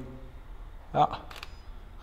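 Sony A7R IV camera's shutter firing once, a quick double click, just under a second and a half in.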